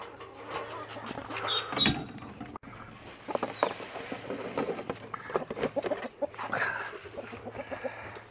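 Hens clucking as they crowd a feeder, with short irregular calls and scratches; about three seconds in, laying mash is poured from a bucket into a galvanized metal feeder with a grainy rustle.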